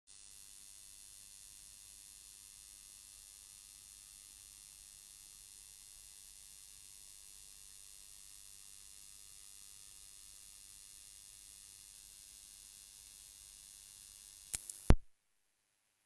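Steady high-pitched electronic hiss of an open audio line. About fifteen seconds in it ends with two sharp clicks, the second the louder, and the sound cuts off to silence.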